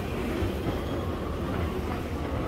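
Steady low mechanical rumble in a subway station, with a train-like running sound and no single event standing out.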